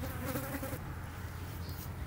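A flying insect buzzing close to the microphone for under a second near the start, over a steady low rumble.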